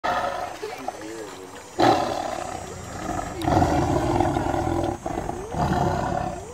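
Tiger roaring: a sudden loud call about two seconds in, then a longer call held for over a second, and another starting near the end.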